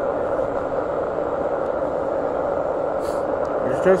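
An MFJ-9420 20-meter SSB transceiver receiving through its speaker: a steady, muffled hiss of band noise with the garbled sideband voices of an on-air net in it.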